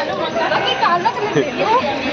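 Several people's voices talking over one another in indistinct chatter.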